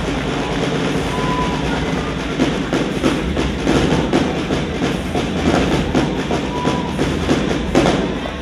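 Loud rock music with a fast, driving drum beat of snare hits.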